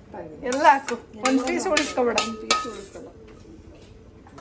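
A spatula scraping and clinking against a stainless steel pan as creamy pasta is scooped out, with a few sharp clinks about two seconds in, under talking.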